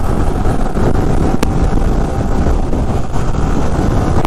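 Wind rushing over the helmet-mounted microphone of a Yamaha sport bike at about 85–90 km/h, over the steady drone of its engine in fifth gear. A single sharp tick comes about a second and a half in.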